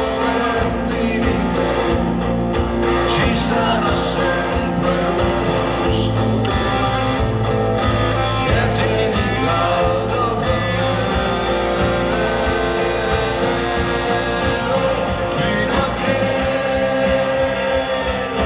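Live rock song: a man's voice singing over hollow-body electric guitar and upright double bass.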